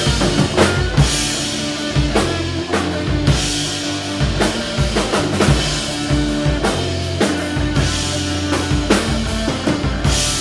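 Live rock band playing at full volume: electric guitars holding sustained notes over a drum kit, with kick and snare hits running throughout.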